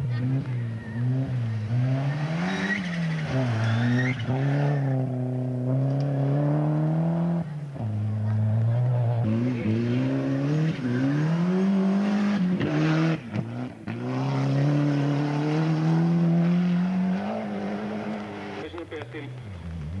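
Rally cars going past one after another at racing speed, their engines revving up and down through gear changes. The sound changes abruptly several times where the recording cuts from one car to the next.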